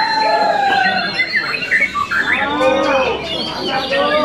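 White-rumped shama (murai batu) singing a loud, varied song. It opens with a long, slightly falling whistle and later runs a series of quick rising sweeps.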